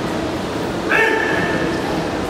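A single loud, held shout from a person, starting about a second in and lasting about a second, over the steady background noise of a gym hall.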